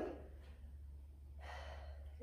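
One short, audible breath from a woman, about one and a half seconds in, over a low steady hum.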